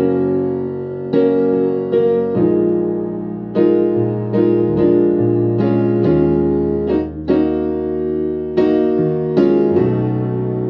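Digital keyboard in a piano voice playing slow gospel chords, full sustained chords over held low bass notes, a new chord struck about every second.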